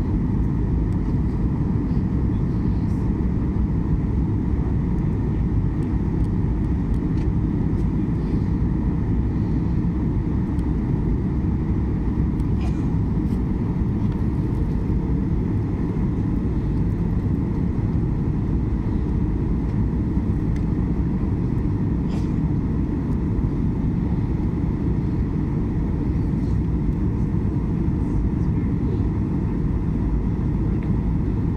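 Steady low roar of an airliner's engines and rushing air heard inside the passenger cabin on the descent to landing, with a faint steady tone above it.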